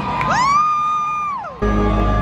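Live stadium concert sound: a single high voice note swoops up, holds for about a second and falls away, then full concert music with heavy bass cuts in suddenly near the end.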